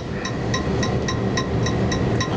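Steady low hum and hiss with a fast, even ticking, about six ticks a second, and a faint steady high whine: background noise of an old analog videotape recording.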